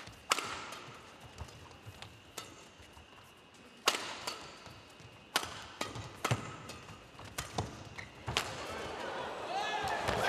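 Badminton rally: the sharp cracks of rackets striking a shuttlecock, about a dozen of them at an uneven pace, the exchanges quickening in the second half.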